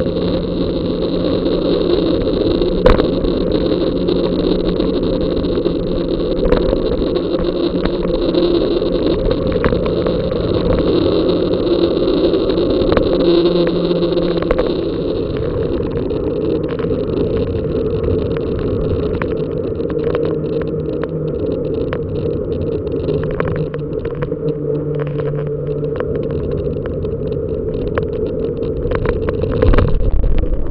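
Steady wind buffeting and road rumble on the microphone of a camera riding on a moving bicycle, with scattered sharp clicks and rattles that come more often in the second half, and a louder jolt right at the end.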